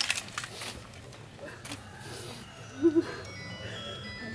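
Light clatter of an honour guard's rifles being brought up to the firing position, a few faint clicks in the first moment, then a hushed pause of low murmur before the volley.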